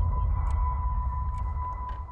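Trailer sound design: a steady high-pitched tone held over a deep low rumble, the rumble fading toward the end, with a few faint ticks.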